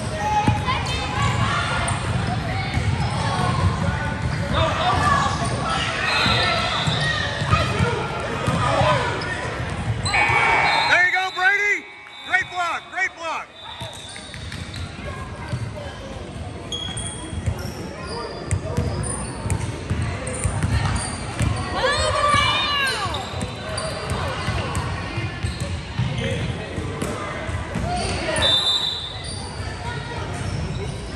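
Basketball dribbling and bouncing on a hardwood gym floor during play, with squeaks and voices from players and spectators echoing in a large indoor gym.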